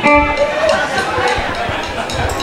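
Live band starting a song: a guitar chord rings out at the very start, then the band plays on under voices in the room.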